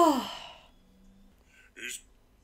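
A woman's voiced sigh, its pitch rising and then falling, trailing off into breath within the first second.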